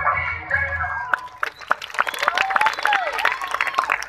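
Music with a heavy bass beat stops abruptly about a second in. Clapping and crowd voices follow.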